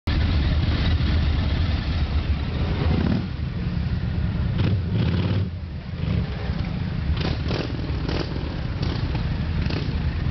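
Motorcycle engines running at idle, a low steady rumble, with several short sharper sounds in the second half.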